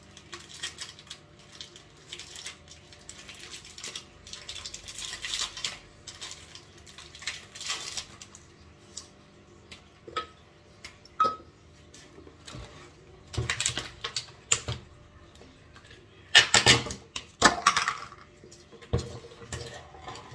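Crinkling and tearing of a plastic biscuit wrapper as a speculoos packet is opened, followed by the biscuits being dropped into a glass blender jar, with sharper knocks and clatter in the second half.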